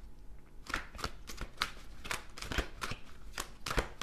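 Tarot cards being shuffled by hand: a run of quick, irregular card snaps and clicks, starting just under a second in.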